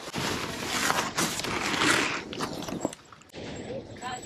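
Thin white packing sheets rustling and crinkling as they are pulled out of a cardboard box: a dense, scratchy rustle for the first two seconds or so that eases off after about three seconds.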